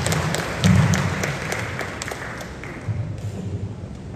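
Audience applauding, thinning out about two and a half seconds in, with a few low thuds mixed in.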